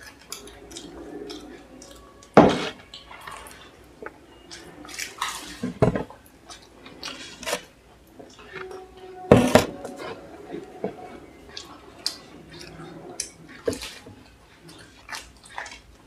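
Tableware sounds at a meal: clay cups and plates knocking and clinking on a wooden table among the small clicks of eating samosas, with three much louder knocks spread through.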